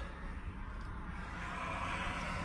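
Faint steady low rumble with a light hiss: background noise inside a pickup truck's cab.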